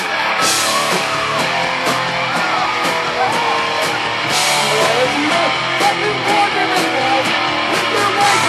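A hardcore punk band playing live: loud distorted electric guitars over drums, with bright cymbal crashes about half a second in and again around four and a half seconds.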